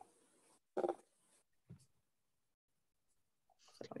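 Mostly silence on a video call, broken by a single short spoken word about a second in.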